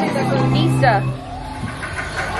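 Dark-ride show soundtrack: a held low note under a character's voice, with a quick falling glide a little under a second in.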